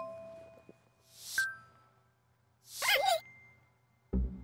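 Cartoon sound effects on an animated logo end card: the last notes of a jingle ring out, then a short swelling whoosh ends in a sharp ding about a second and a half in. Near three seconds a second whoosh carries a warbling, voice-like squeal, leaving a faint tone ringing.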